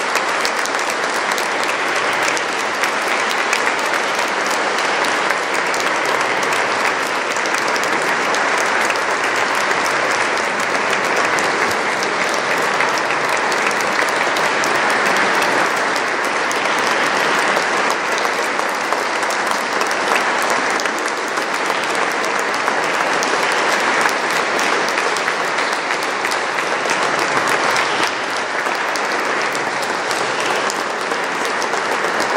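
A concert audience applauding: dense, steady clapping that holds at an even level throughout.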